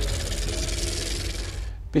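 A transition sound effect for an on-screen title card: a rushing, hissing noise over a low bass that fades and then cuts off just before the end.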